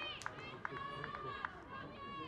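Faint voices of footballers calling out across the pitch, a few short high shouts with some distant crowd noise.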